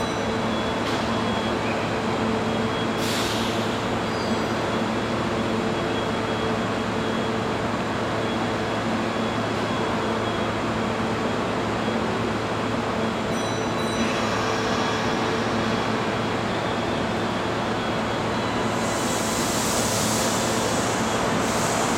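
Kintetsu 30000 series Vista EX limited-express train standing at an underground platform, its onboard equipment giving a steady hum with a couple of held tones over the station's echoing ambience. Near the end a hiss rises as the train starts to move off.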